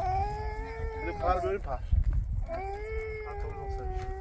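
A puppy whining in two long, high cries, each about a second and a half and breaking up into a wobble at the end; the second begins about two and a half seconds in.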